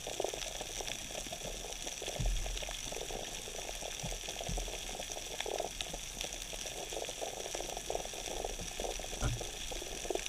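Underwater ambient noise picked up through an action camera's waterproof housing: a steady crackling, bubbling wash of water. There are a couple of dull low thumps, about two seconds in and again near the end.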